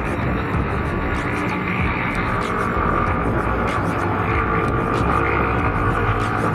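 Steady riding noise from a moving motorcycle, with wind rumbling on the camera microphone, under background music.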